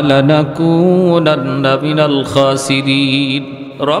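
A man's voice chanting a drawn-out, melodic Arabic supplication into a microphone, holding long notes: the opening of a closing prayer (munajat).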